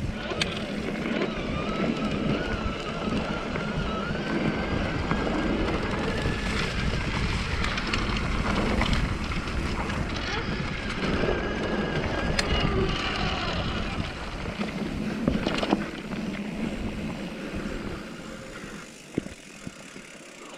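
Electric mountain bike ridden along a dirt singletrack: knobby tyres rumbling over the trail with wind on the microphone, and a thin whine from the 1000-watt Bafang mid-drive motor rising slightly in the first few seconds. The noise gets quieter near the end.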